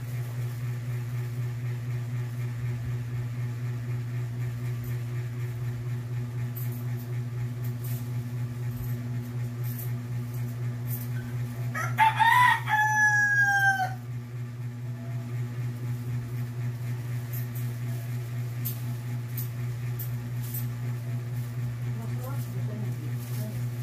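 A rooster crows once, about twelve seconds in: a loud call of about two seconds that falls in pitch at the end. Underneath it a steady low hum runs throughout.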